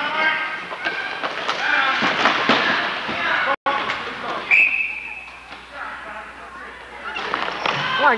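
Indoor ball hockey game: players' voices and shouts with occasional knocks of sticks and ball in a reverberant arena. The sound drops out for an instant a little before halfway, and a short, high whistle blast follows about a second later.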